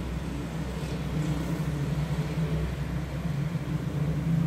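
Steady low mechanical hum that holds unchanged throughout, with a faint even hiss above it.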